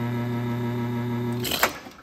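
Espresso machine pump humming steadily while pulling a shot. It cuts off about one and a half seconds in with a short hiss as the shot is stopped and the group releases pressure.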